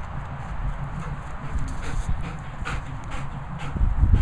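German Shepherd panting close by, short breaths about once a second that grow clearer near the end, over a steady low rumble.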